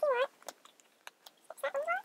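Two short high-pitched vocal calls, one bending down in pitch at the start and one gliding upward near the end, with light clicks of small objects being handled in between.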